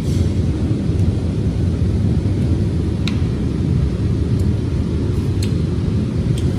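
A steady low rumble with a few faint, light clicks scattered through it.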